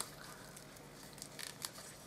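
Faint rustling of cardstock and paper handled between fingers as the tab closure of a small handmade tea-bag holder is worked, with a couple of light ticks in the second half.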